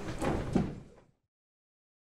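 A few short knocks and clatter over lecture-hall room noise, fading out to silence about a second in.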